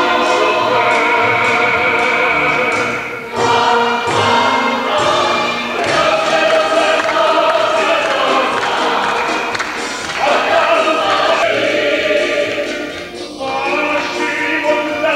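Mixed choir of a Polish folk song-and-dance ensemble singing a folk song together with a male soloist. The music dips briefly in loudness about three seconds in and again near the end.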